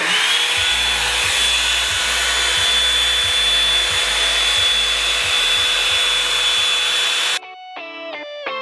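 Revlon One-Step hot-air dryer brush running on its high setting: a steady rush of blown air with a motor whine that rises in pitch as it comes up to speed at the start. It cuts off suddenly near the end, and guitar music takes over.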